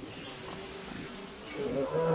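Low background hiss with a faint steady hum, then a person's untranscribed voice starting near the end.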